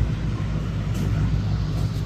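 Steady low background rumble with no speech, and a faint click about a second in.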